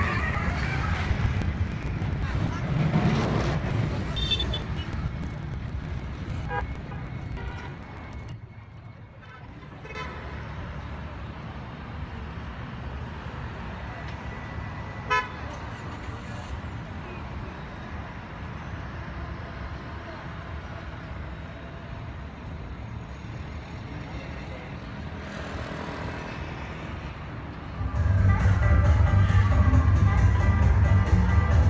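Night street ambience: music with a beat fades out over the first several seconds, then steady traffic noise with a single short car-horn toot about halfway through. Loud dance music with heavy bass starts suddenly shortly before the end.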